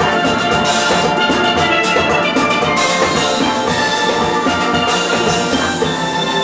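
Steel orchestra of steel pans, backed by a drum kit, playing a ballad melody with long held notes over a bass line, with steady cymbal strokes.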